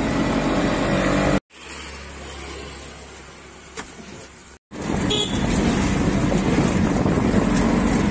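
Auto-rickshaw engine and road noise heard from the passenger seat while riding. About a second and a half in the sound cuts off abruptly to a few seconds of much quieter roadside ambience with a low hum, then the riding noise returns just as suddenly.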